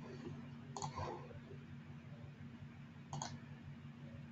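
Two computer mouse clicks, about two and a half seconds apart, over a faint steady low hum.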